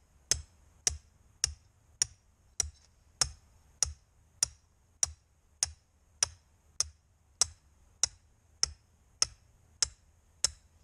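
Hammer pounding a quarter-inch steel rebar trap stake with a washer welded to its top into the ground: steady, evenly spaced sharp metallic strikes, a little under two a second.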